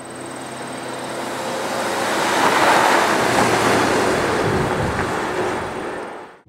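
2007 Mercedes-Benz GL450 SUV driving past, its 4.7-litre V8 and tyre noise building to a peak about halfway and then fading away.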